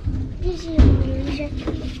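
Handling and bumping of bags and the phone as people push into a cramped train compartment, with a dull thump a little under a second in, and faint voices behind.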